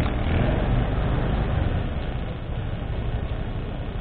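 Motorcycle engine running at low speed with road noise as the bike rolls slowly forward, the sound easing off gradually as it slows toward a stop.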